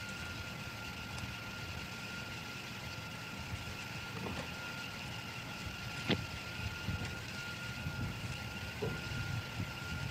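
Car engine running at low speed as the car rolls slowly along a wooded dirt track, an uneven low rumble under steady hiss and a thin high hum, with a sharp click about six seconds in.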